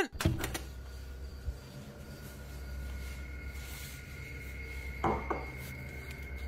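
A drinking glass clinking lightly against a stainless-steel kitchen sink as it is emptied, a few short clicks over a steady low hum.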